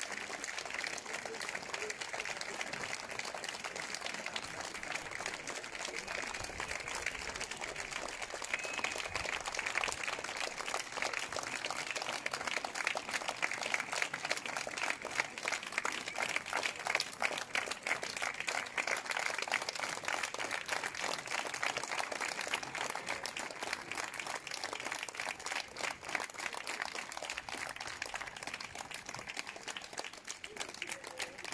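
Audience applauding, many hands clapping at once in a steady patter that grows a little louder midway.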